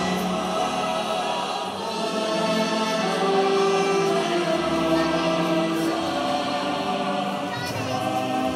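Recorded Christmas choral music from a singing Christmas tree display: a choir singing held notes over musical accompaniment.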